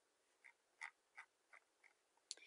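Near silence with about five faint, short clicks from a computer mouse, spaced irregularly about a third of a second apart.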